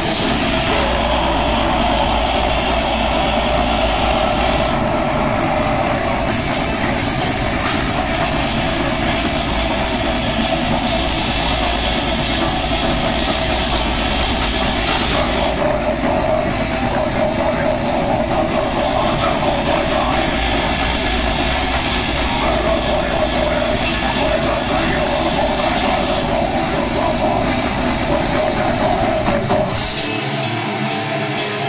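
Live death metal band playing at full volume: heavily distorted guitars and drums in a dense, unbroken wall of sound, recorded close and overloaded from the crowd.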